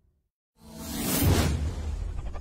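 Whoosh sound effect from a title-animation intro: a short gap of dead silence, then a loud whoosh swells in about half a second in and peaks a little past a second, over a deep low rumble.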